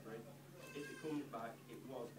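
Indistinct voices, with a high-pitched, wavering voice about a second in.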